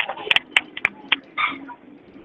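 A quick irregular series of sharp clicks and knocks, with a brief higher-pitched sound about one and a half seconds in.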